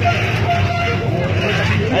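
Small electric cement mixer running with a steady low hum, its drum turning a load of liquid that sloshes inside.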